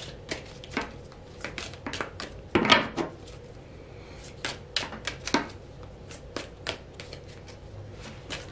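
A deck of oracle cards being shuffled by hand: a run of irregular soft clicks and slaps, with one longer, louder burst of shuffling nearly three seconds in.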